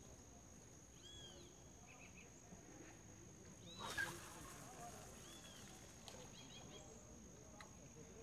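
Birds calling in the background: a short arched whistle repeated several times, with faint chirps between. About four seconds in, a brief swish as a spinning rod is cast.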